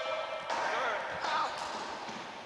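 Racquetball being hit with a racquet and bouncing off the court's walls and wooden floor, a few sharp hits.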